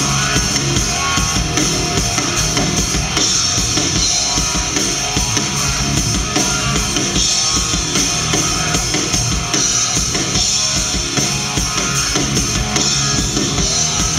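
Live rock band playing an instrumental passage on electric guitars and a drum kit, the drums keeping a steady beat throughout.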